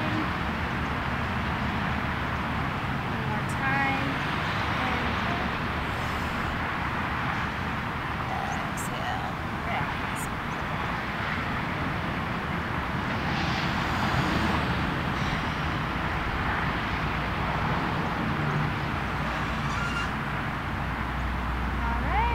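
Steady outdoor background noise of distant road traffic, holding at an even level, with a few faint short pitched sounds scattered through it.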